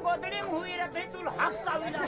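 Indistinct talking and chatter from several voices.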